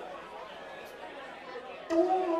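Low murmur of audience chatter in a hall. Right at the end a live rock band suddenly starts playing, loud, with held chords.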